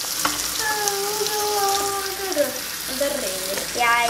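Chicken slices sizzling in hot butter in a frying pan, a steady crackle, while they are turned with a utensil. Over it a voice holds a long level note through the middle, sliding lower near the end.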